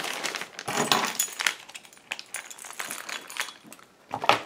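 Handling noises: scattered light clicks, clinks and rustles as a plastic mailer and small objects are handled. They are busier in the first second and a half, then fainter.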